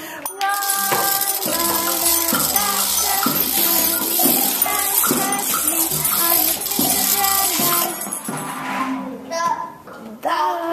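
A class of young children singing a chant together while shaking rattles and tambourines. The shaking stops about eight seconds in, and the singing trails off near the end.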